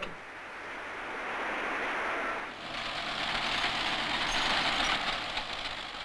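Steady rushing machinery noise with no clear pitch. About two and a half seconds in it jumps to a louder, hissier sound.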